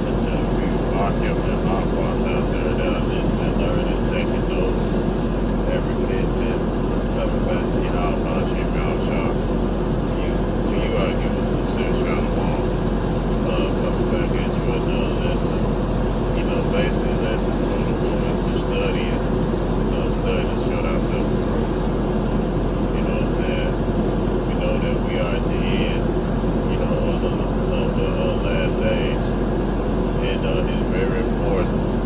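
Steady engine and road drone heard from inside a moving vehicle's cabin.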